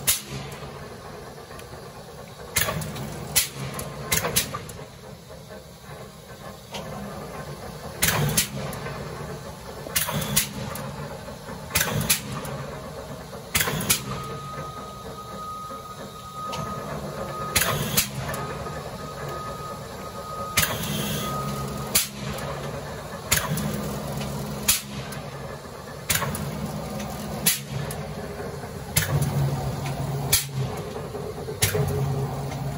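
90-ton V&O open-back inclinable mechanical punch press running: the motor and flywheel hum steadily while the ram cycles, each stroke giving a sharp metallic clank, irregularly every one to three seconds.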